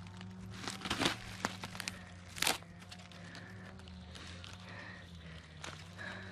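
Dry, fibrous palm-trunk pith crackling and crunching as it is picked and torn apart by hand, in a few sharp cracks. The loudest comes about two and a half seconds in.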